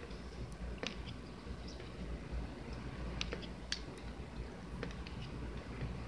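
Topps baseball cards being flipped through by hand, giving a faint, irregular scatter of light clicks and slides of card stock against card stock.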